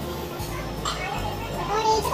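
A woman talking, with other voices in the background.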